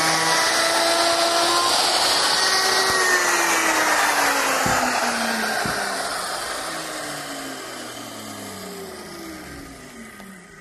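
Handheld electric router with a cove bit running at full speed, then switched off and spinning down. Its whine falls steadily in pitch and fades over several seconds. Two light knocks come about halfway through.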